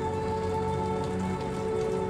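The soundtrack of the drama playing under the reaction: a sustained low musical drone over a steady hiss.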